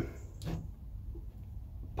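Quiet low background rumble with one faint, brief rustle about half a second in, as fingers work loose potting compost in a plastic pot.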